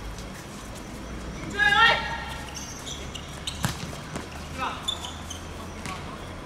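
Players shouting across a football pitch, with a loud call about two seconds in and fainter calls later. A single sharp knock of a football being kicked about three and a half seconds in.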